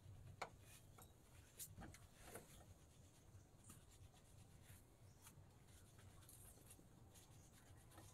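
Near silence, with faint rustling and a few light clicks from someone shifting about and handling cloth on a bamboo floor.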